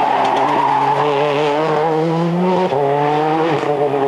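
Ford Focus WRC rally car's turbocharged four-cylinder engine pulling hard, its note climbing slowly and then dropping sharply a little past halfway, as at an upshift.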